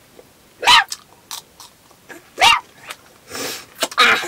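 A dog barking twice, two short barks nearly two seconds apart.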